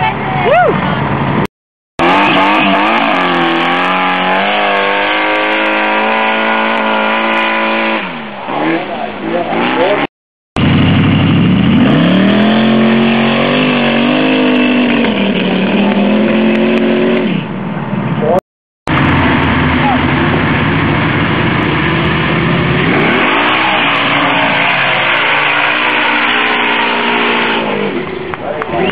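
Big engines of dune hillclimb vehicles, a sand rail and a pickup truck among them, running at full throttle up a sand hill, the pitch climbing and dropping as they rev. The sound is split into several separate runs by abrupt cuts.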